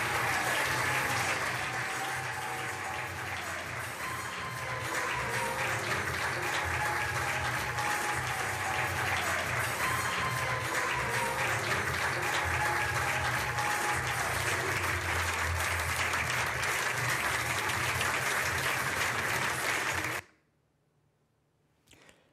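Audience applauding, with music playing underneath; both cut off suddenly about two seconds before the end.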